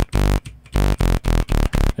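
Multisampled hardware synth notes played back from Ableton Live's Sampler: a run of about seven short notes stepping up the keys one at a time. Each key triggers its own recorded sample rather than a pitch-stretched copy of one note.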